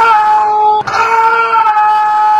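A man's loud, long shout of astonishment, "Oh!", held on one high pitch, with a short break just under a second in, as a card trick is revealed.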